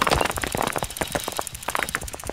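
Bicycle ticking and rattling as it is ridden: a rapid run of uneven clicks that thins out toward the end.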